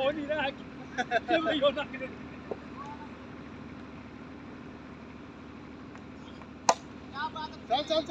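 A single sharp crack of a cricket bat striking the ball, a little past two-thirds of the way through, followed at once by players' shouts. Voices call out earlier too, over a steady low hum.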